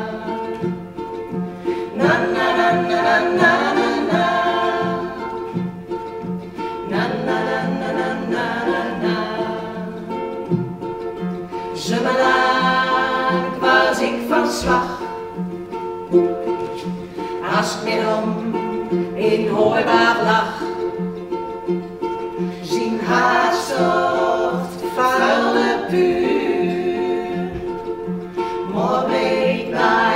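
Three women singing together to ukulele accompaniment, sung phrases with short breaks over a steady strummed rhythm.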